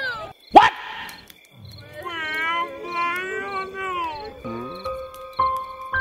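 A drawn-out, high, wavering crying wail that rises and falls for a couple of seconds, then slow piano music comes in with a few struck notes.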